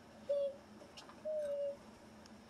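A child's voice humming two short steady notes, the second longer than the first.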